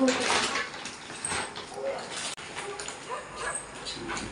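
Plastic carrier bag rustling and crinkling in irregular bursts as a gift is pulled out of it.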